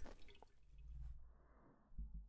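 Faint trickle of engine oil draining from the oil pan into a drain pan, barely above silence.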